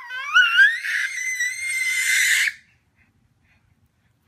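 A baby's high-pitched squeal, rising in pitch and then held for about two seconds before cutting off abruptly.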